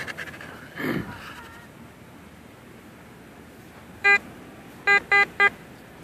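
Metal detector target tone: one short beep about four seconds in, then three quick beeps of the same pitch near the end, sounding over a target that is taken for a pull tab.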